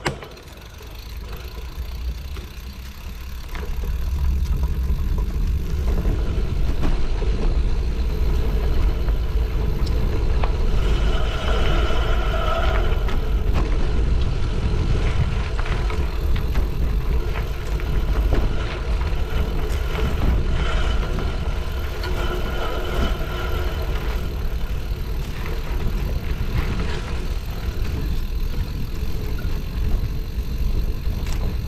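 Bicycle with knobby tyres riding a dirt forest trail: a steady low rumble of wind and tyre noise that builds up about four seconds in, with the rattle of the bike over the rough ground.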